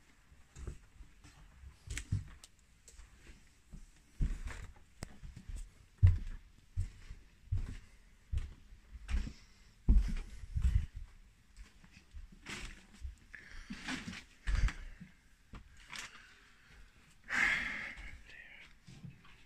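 Footsteps moving through the house and up to the next floor: a string of irregular low thuds, with a louder scuffing rustle near the end.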